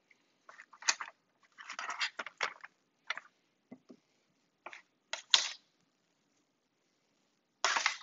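Metal kitchen tongs clicking and scraping against a foil tray and a plate as food is picked up and set down: a scatter of short clicks and scrapes, then a longer scrape near the end.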